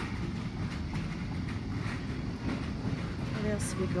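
Steady low rumble of store background noise with a few faint knocks as the phone is carried along a shop aisle; a woman's voice starts near the end.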